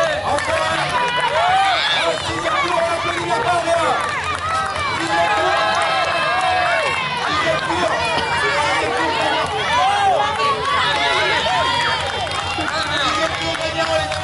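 Many spectators' voices at once, calling out and shouting over each other without a break.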